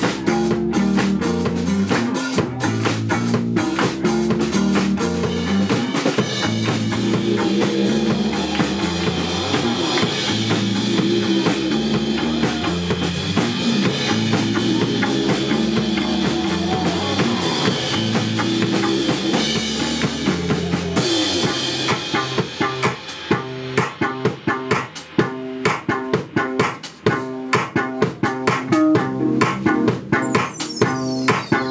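Live band music: electric bass guitar and keyboard over a drum kit. About twenty seconds in, the fuller sustained layer drops away and the drum hits come through more sharply.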